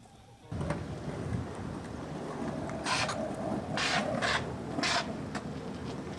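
Outdoor ambience with wind on the camcorder microphone, beginning about half a second in, with four short bursts of hiss a little after halfway.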